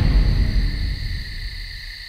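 A deep low rumble dies away slowly as a music sting fades out, over a steady high chirring of night insects.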